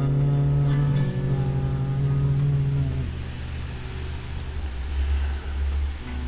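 Electric guitar's last chord held and ringing, stopped about three seconds in. A low rumble carries on after it and swells briefly near the end.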